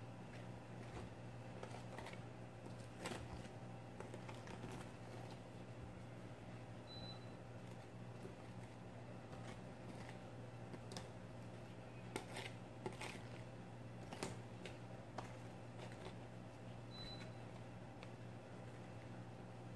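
Faint, irregular clicks and scrapes of a spatula spreading grout over broken mirror pieces, with a cluster of sharper clicks in the second half. A steady low hum runs underneath.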